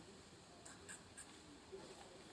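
Near silence: faint outdoor background, with three or four soft ticks a little before halfway through.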